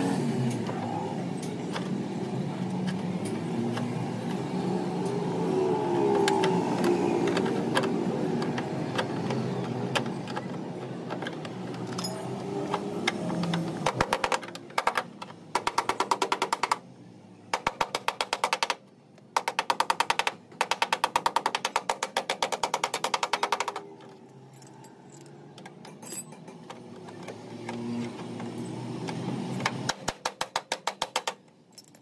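Rapid, evenly spaced metal tapping on a car's sheet-metal body panel, in quick runs with short pauses, as a paintless-dent-repair tap-down tool works the dent. The first half holds a steadier, lower-pitched din without distinct taps.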